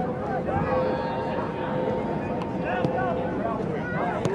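Indistinct, overlapping shouts and calls of soccer players and sideline spectators during live play, over a steady hum.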